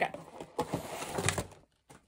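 Clear plastic packaging tray being slid out of a cardboard doll box, crinkling and scraping for about a second, with a light tap near the end.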